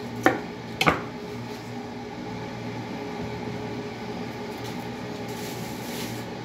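A kitchen knife cutting through raw potato onto a wooden chopping board: two sharp chops about half a second apart in the first second. A steady hum runs underneath throughout.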